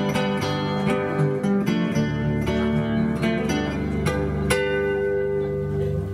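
Acoustic guitar strummed and picked alone in the song's instrumental close, a stroke every half second or so. A chord struck about four and a half seconds in is left ringing.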